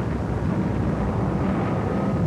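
Steady low rumble of bomber aircraft engines, a rough drone with no distinct bangs.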